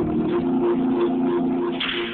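Youth gospel choir singing a held, wavering chord, with the bass dropped out underneath.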